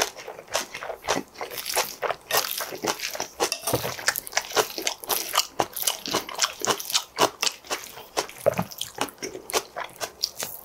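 Close-miked chewing of a mouthful of spring-vegetable bibimbap: a steady run of crisp crunches, several a second.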